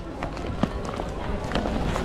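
Market background of voices and bustle, with a string of short knocks and clatter close to the microphone.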